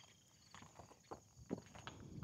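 Faint footsteps crunching on gravel, about four steps.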